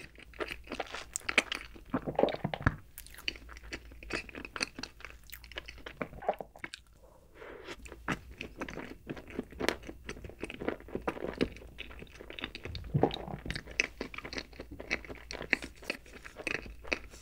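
Close-miked ASMR eating sounds: a person chewing and crunching a chocolate dessert, with many quick, irregular crackles, and a brief quieter pause about seven seconds in.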